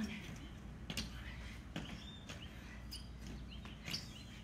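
Soft thuds of feet and hands landing on a patio during burpee jumps, several about a second apart, with birds chirping in the background.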